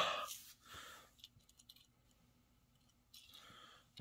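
A short huff of breath onto a die-cast toy car's paint, fogging it to buff away speckles, then a softer second breath and a few faint clicks and light rubbing as it is wiped with a cotton T-shirt.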